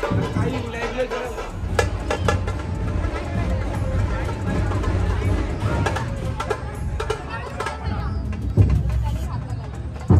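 Dhol-tasha ensemble drumming: a dense, steady low beat of large dhol drums with a few sharp strikes around two seconds in, over crowd voices.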